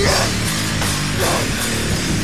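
Power violence band playing an instrumental passage on a home demo recording: heavily distorted guitar and bass over drums, with cymbal hits repeating at a steady beat.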